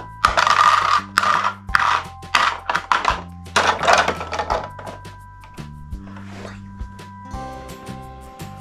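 Toy figures and plastic rings clatter into the clear bowls of a toy balance scale, in several quick rattles and knocks mostly in the first half, over background music of held tones.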